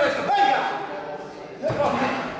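A man shouting encouragement in Italian ("Vai via!"), the calls coming in two bursts with a short lull between.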